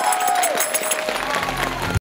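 Audience applause and cheering over music, with one long held voice that drops away about half a second in.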